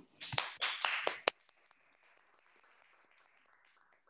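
A short burst of hand clapping, about half a dozen sharp claps within a second, as a presentation is closed. Faint room hiss follows.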